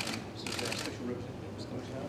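Press photographers' camera shutters firing in a rapid burst of clicks about half a second in, with a few fainter clicks near the end, over low background chatter.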